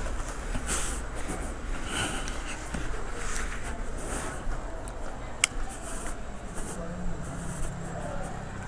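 Quiet background of faint distant voices and scattered light knocks, with one sharp click about five and a half seconds in.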